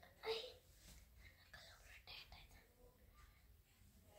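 Faint whispering, with one short louder breathy sound about a third of a second in.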